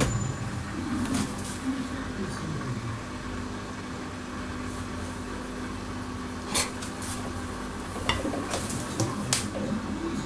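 Hotpoint Ultima WT960G washing machine drum turning, with a steady motor hum and a few sharp knocks, the loudest about six and a half seconds in and two more near the end.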